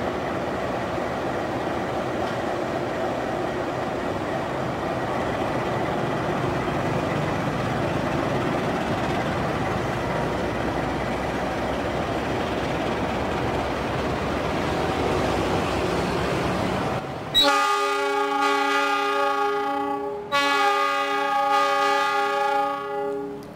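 CC 206 diesel-electric locomotive moving slowly with its train, engine and wheel noise a steady rumble. About 17 seconds in its horn sounds a long multi-tone blast, breaks briefly and sounds again; the horn is the loudest sound.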